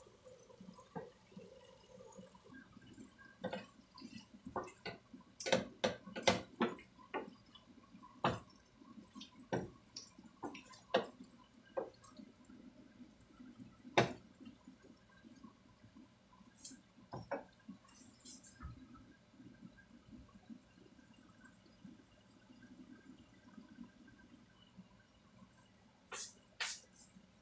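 A wooden spoon stirring food in a metal frying pan, with irregular clicks and knocks as it strikes the pan. The knocks come thickest in the middle and thin out near the end, over a faint background hiss.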